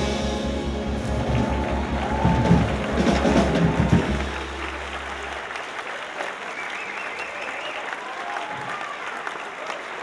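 A jazz big band ends a tune on a held final chord that rings out for about five seconds while the audience breaks into applause. The applause goes on alone after the band stops.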